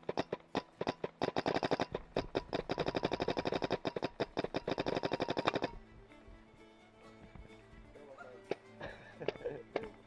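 Paintball marker firing a quickening string of shots that becomes a rapid stream of about ten shots a second, then stops abruptly about five and a half seconds in. Background music runs underneath.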